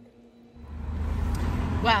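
Road and engine noise inside a moving car's cabin: a loud, steady low rumble that starts suddenly about half a second in, after a brief quiet moment.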